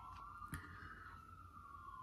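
A siren wailing faintly in one slow rise and fall of pitch. A single sharp click comes about half a second in.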